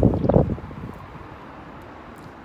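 Steady outdoor city background hiss with wind on the microphone, after two short bumps in the first half-second.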